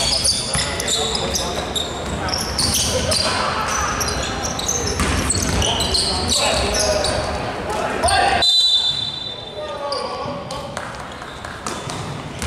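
A basketball being dribbled on a wooden gym floor during a pickup game, with players calling out and the echo of a large hall. A high steady tone sounds for about a second and a half a little past the middle.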